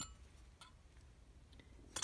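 Near silence broken by a few light clicks from the twin carburetor bank being handled and turned over on the bench, the sharpest right at the start.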